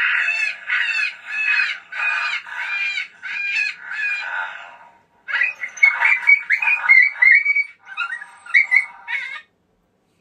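Lucky Duck Super Revolt electronic predator caller playing a recorded rabbit distress call through its speaker, a squalling cry repeated about twice a second. From about five seconds in the pattern turns choppier and more varied as a second recorded call is layered on, two calls playing at the same time.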